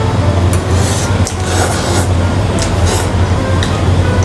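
A person slurping and eating instant noodles, in several short, wet, noisy bursts. A steady low drone runs underneath.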